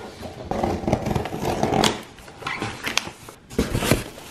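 A large cardboard shipping carton being handled and opened by hand: rustling and scraping of cardboard flaps and plastic wrapping, with several sharp clicks and knocks, the last few close together near the end.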